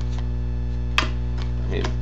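Steady electrical mains hum in the recording, with one sharp click about a second in as trading cards are handled.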